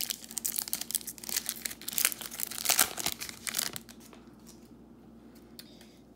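Foil wrapper of a 2021 Panini Score football card pack being torn open and crinkled by hand, crackling densely for about four seconds, then going much quieter as the cards are slid out.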